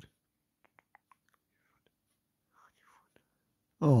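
Near silence with a few faint clicks about a second in and a soft, brief rustle later, then a man's voice starts near the end.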